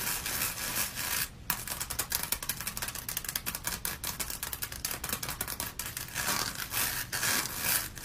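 Rhinestone-covered special-effects mask being peeled off the head by hand: a dense, rapid crackling and rubbing of adhesive and stones, with a short break about one and a half seconds in.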